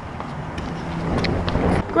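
Outdoor background noise: a low rumble with wind on the microphone, growing louder toward the end, and a few faint taps.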